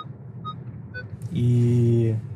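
Faint background music of soft single notes, about two a second. About a second and a half in, a man speaks one long drawn-out "І…", the Ukrainian for "and".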